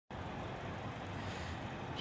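Faint, steady low rumble of background traffic noise, with no distinct events.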